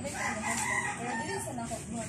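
A drawn-out animal call with several wavering, bending tones, lasting about a second and a half.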